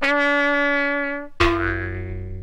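Brass fanfare ending: a long held trumpet note that fades slightly, then about one and a half seconds in a sudden lower final chord rings out.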